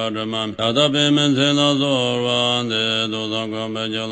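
A man chanting a Tibetan Buddhist tantra in a low, steady recitation voice. About half a second in there is a quick break for breath, then a louder, drawn-out phrase for about two seconds before the even recitation resumes.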